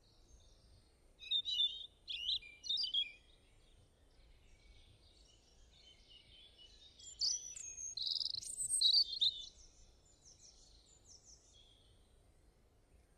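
Small birds chirping in short bursts: a few quick chirps about a second in, then a longer run of chirps and pitch-gliding calls about seven seconds in, trailing off into faint rapid trills.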